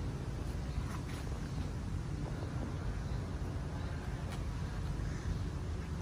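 Steady low background rumble of outdoor ambience, with a few faint ticks.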